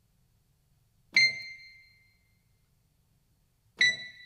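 Two high single notes played on the top keys of a WSA-1 synthesizer, heard through its monitored audio return. Each is short and dies away within about half a second, the second coming near the end.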